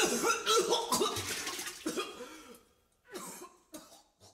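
A few short, coughing-like bursts of a person's voice, getting fainter over about two and a half seconds, then two faint ones near the end.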